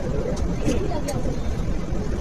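Steady low background rumble with faint voices and a few soft clicks.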